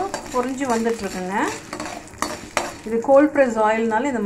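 A spatula stirring and scraping dal frying in hot oil in a non-stick pan. The oil sizzles steadily, and the spatula on the pan gives scrapes, knocks and gliding, squeaky squeals that come thickest near the end.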